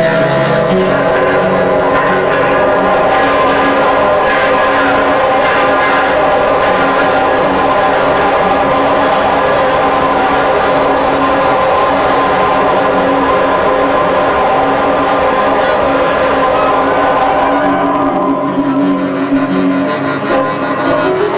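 Upright piano played continuously: a dense, sustained wash of many notes sounding together, thinning slightly near the end.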